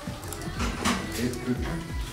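Music with a voice in the mix: a recording of the woman's own speech playing back from the editing computer.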